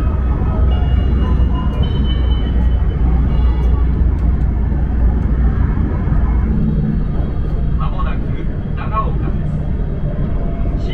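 Steady low rumble of a Joetsu Shinkansen train running, heard inside the passenger car, easing a little after about seven seconds. The train's public-address announcement plays over it.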